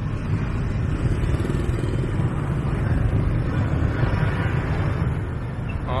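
Heavy city traffic, many motorbike and car engines running together in a steady drone with a strong low rumble.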